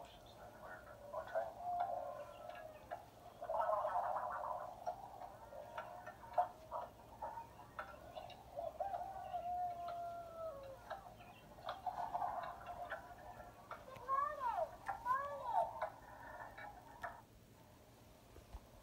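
Video audio played through a tablet's small speaker: thin, tinny sound with scattered clicks, a long falling sliding tone past the middle and a run of quick rising-and-falling tones, which fade out a little before the end.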